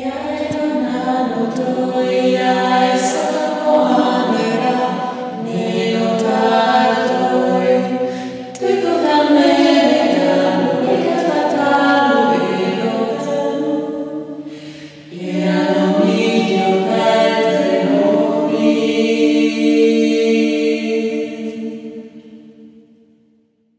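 A choir singing long, held chords without instruments, in three phrases, fading out near the end.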